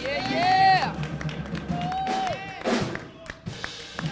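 Voices in a church congregation calling out right after a gospel song ends, then scattered hand claps as the sound dies down.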